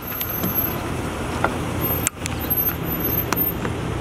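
RetraxPRO XR aluminium-slat retractable tonneau cover sliding along its bed rails with a steady rolling rattle, with a sharp click about halfway through.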